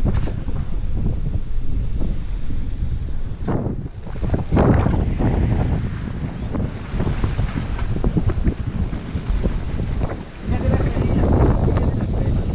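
Strong wind buffeting the microphone over the rush of waves along the hull of a sailing yacht driving through rough seas. The noise drops off briefly about four seconds in and again near the end.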